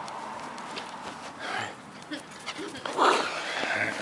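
German Shepherd puppy running up to the camera and bumping into it about three seconds in: loud rubbing and knocking on the microphone, mixed with the puppy's own sounds.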